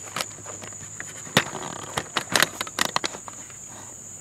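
Steady high-pitched insect trill, with scattered short clicks and scuffs on top, most of them in the middle of the stretch.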